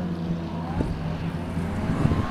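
A sedan's engine running hard down the track, a steady engine note with a fainter whine gliding upward over it.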